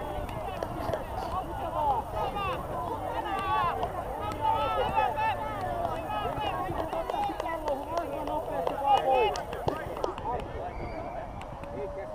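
Young players' voices shouting and calling over one another across a football pitch, high-pitched and with no clear words. The calls die down about ten seconds in.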